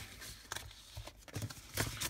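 Paper decal sheets being handled and shuffled by hand: a few faint rustles and light taps.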